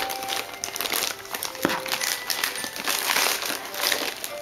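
Gift paper crinkling and rustling in a baby's grabbing hands, a run of small crackles that is busiest about three seconds in.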